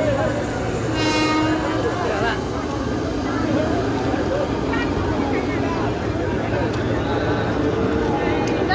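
KRL Commuterline electric train rolling slowly past on the track with a steady running rumble. A brief horn sounds about a second in. Crowd voices are heard over it.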